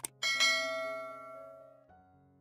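A short click, then a bright bell chime that rings out and fades over about a second and a half: the notification-bell sound effect of a subscribe-button animation, over soft background music.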